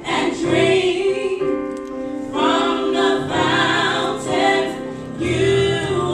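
Three women singing a gospel song in close harmony into handheld microphones, in phrases with long held notes.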